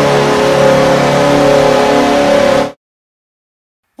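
A very loud goal horn sound effect: one steady blast of several held tones that cuts off suddenly just under three seconds in.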